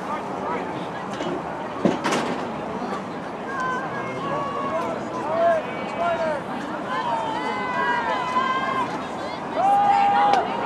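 Spectators in football stands shouting and calling out over a steady crowd hubbub, with drawn-out yells building toward the end. There is a single sharp knock about two seconds in.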